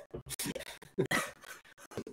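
Several men laughing over a video call, in irregular breathy chuckles.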